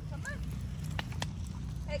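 Footsteps of a person and dogs walking on asphalt, with a couple of sharp clicks about a second in, over a low steady rumble.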